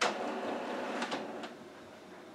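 Xerox Phaser 8500 solid-ink printer's internal mechanism running briefly as it powers up: a sudden start, a rush of motor noise with a few clicks, stopping after about a second and a half.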